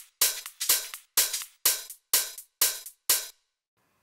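Soloed percussion top loop in a tech house track, played back from the DAW: hiss-like hi-hat hits about two a second with lighter sixteenth-note ticks between them, adding shuffle to the groove. It stops about three and a half seconds in.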